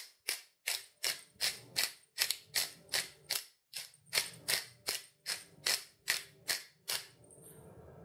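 Spice shaker of ground pepper mix shaken over a pot, with sharp regular shakes at about two and a half a second that stop about a second before the end.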